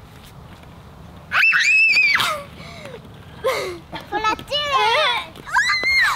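Young girls shrieking in a very high pitch: one long scream about a second in and another near the end, with shorter squeals and giggling-like cries between.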